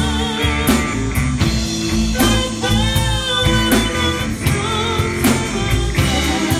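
Live blues band playing at full volume: a steady drum beat with a hit about every three quarters of a second, bass and electric guitar, and a wavering lead melody held over them near the middle.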